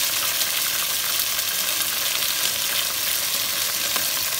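Chicken pieces and ginger-garlic paste frying in hot oil in a pot, a steady sizzle.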